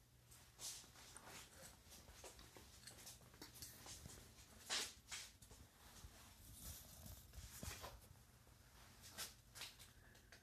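Near silence in a small room, with faint scattered clicks and rustles; the loudest comes about five seconds in.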